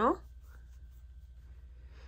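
Quiet room tone with a steady low hum, after a spoken word trails off right at the start.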